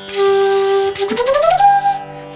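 Chitravenu slide flute playing: a breathy held note for about a second, then a smooth upward slide of about an octave that settles on a higher held note. The notes along the slide are cut with the tongue, giving quick breaks in the tone as it rises.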